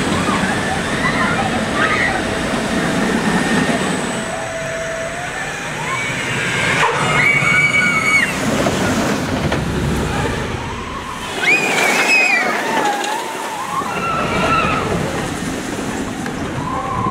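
Intamin launched roller coaster trains rumbling past on the track, with riders screaming: one held scream about seven seconds in and another rising and falling near twelve seconds, over a bed of voices.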